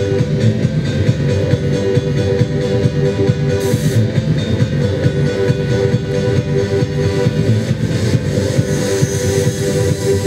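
Electronic music playing steadily with a held synth tone and an even pulse.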